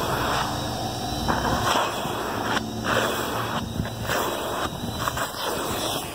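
Car wash vacuum running: a steady rushing of air through the hose that swells and dips every second or so as the nozzle is drawn over the dog's coat.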